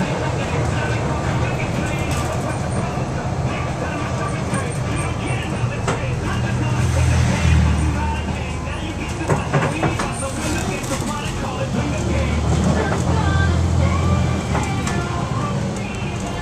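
Cabin noise inside a moving 2003 IC RE rear-engine school bus: the diesel drones and the body rattles, with the low engine sound swelling twice, about seven seconds in and again about twelve seconds in. Voices can be heard underneath.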